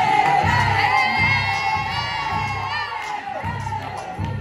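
Pop music track with a steady bass beat played over the hall's speakers, with a group of teenagers shouting and cheering over it.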